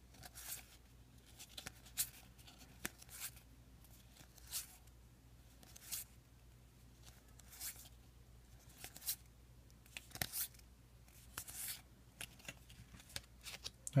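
Magic: The Gathering cards being slid one at a time off a small hand-held stack, each a short papery swish or flick, about one a second and a dozen in all.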